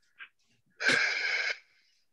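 A person's breath pushed out hard as a single hissing burst, lasting under a second, about a second in.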